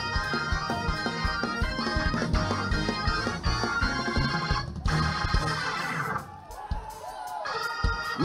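Church worship band music: sustained keyboard chords over a steady beat. It thins out and drops in level briefly about six seconds in, then swells back.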